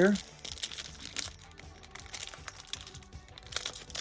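Foil wrapper of a 1991 Pro Set PGA Tour trading-card pack crinkling and tearing as fingers peel it open, a run of small irregular crackles.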